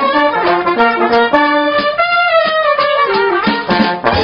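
Dixieland jazz band playing live, with brass in front. One long held note in the middle sags downward near its end.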